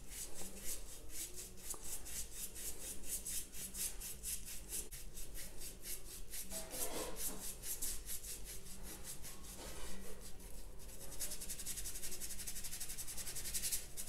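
Small paintbrush rubbing lightly over watercolor paper in many quick, short strokes, the bristles scratching softly on the paper's surface.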